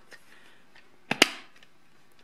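A single sharp plastic click, doubled and with a short ring, about a second in, from the hard plastic case of a multimeter being handled as it is put back together.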